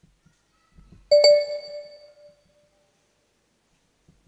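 A bell struck once about a second in, its ringing tone fading away over about a second and a half.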